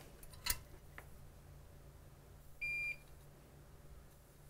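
A single short electronic beep, one steady high tone about a third of a second long, sounds about two and a half seconds in. A sharp click comes about half a second in.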